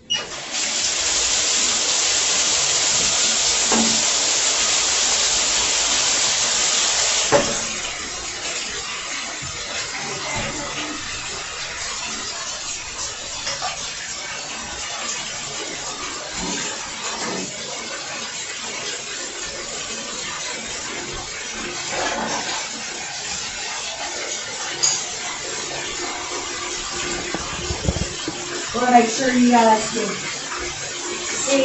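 Bathtub faucet turned on and water running hard into the tub. About seven seconds in the flow drops to a quieter steady run.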